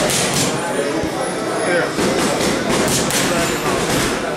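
Boxing gloves smacking leather focus mitts in quick punches, a couple near the start and a faster flurry in the second half, with a man's voice alongside.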